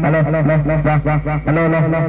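A man's voice saying "alo" into a wireless karaoke microphone, amplified through a small Bluetooth speaker, with its echo effect repeating the word over and over so the sound runs on without a break.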